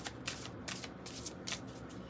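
A deck of large oracle cards being shuffled by hand: a soft run of quick card-on-card flicks and rustles.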